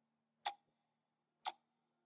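Two faint, sharp ticks about a second apart, like a clock ticking once a second, over a very faint steady low hum.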